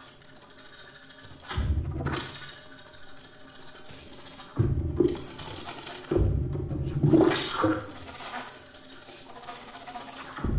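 Experimental contemporary ensemble music for flute, ensemble and live electronics: a series of noisy, rushing swells with low rumble and hiss. The swells start suddenly about one and a half, four and a half and six seconds in, and the one near seven seconds is the loudest.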